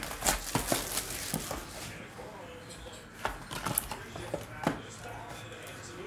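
Hands opening and handling a cardboard trading-card box and its foil pack: scattered light clicks, taps and rustles.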